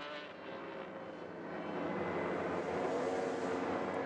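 Steady trackside drone of engine and ambient noise with no clear single event, growing louder over the first couple of seconds.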